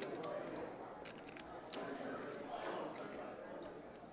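Sharp little clicks of poker chips being handled and stacked, scattered over a low murmur of voices.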